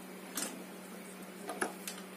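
A steady low hum with a few faint, short clicks, the kind made by handling small parts or cables.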